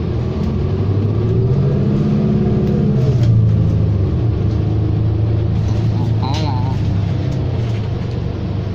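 Engine of a 2019 New Flyer XD40 diesel city bus heard from inside the cabin while the bus is under way. The engine drone rises in pitch over the first few seconds, drops back about three seconds in, and then holds steady.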